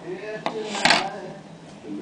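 A single sharp clack with a brief rustle about a second in, as small hard phone parts are handled against a wooden table.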